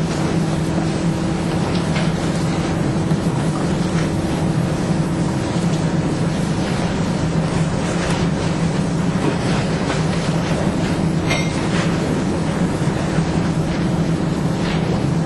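A steady hum with a constant hiss over it, holding at one level throughout, with a faint click about eleven seconds in.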